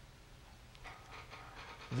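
Quiet room tone with a faint breath-like rustle in the second half, just before a man starts to speak.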